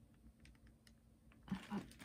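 Faint, scattered light ticks and scratches of a water brush working over watercolour pencil on paper. A short vocal sound from a woman comes near the end.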